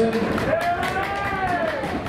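A spectator's single long cheer that rises and then falls in pitch, over scattered hand claps, as a sprinter is introduced before a race.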